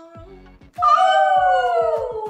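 A long, drawn-out voice falling slowly in pitch, starting about a second in, over music.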